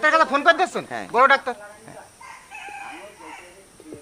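A rooster crowing in the background, a fainter drawn-out call from about two seconds in.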